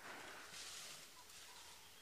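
Near silence: faint outdoor background hiss in the bush.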